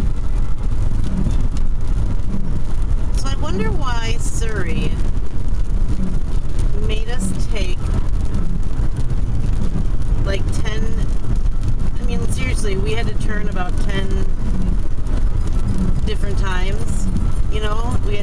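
Steady low rumble of a car's engine and tyres, heard from inside the cabin while driving. Voices come and go over it several times.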